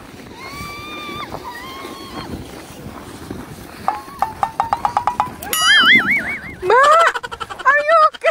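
A young child's high-pitched wordless vocalising: a couple of long calls, then a quick stuttering giggle about four seconds in, rising to loud, wavering squeals of excitement near the end.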